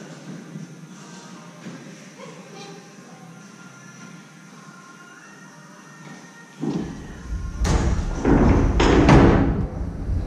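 Quiet hall with faint music, then about two-thirds of the way in, a run of heavy thumps and deep rumbling as a person bounces off a springboard and lands in a foam-block pit. The loudest impacts come about a second apart near the end.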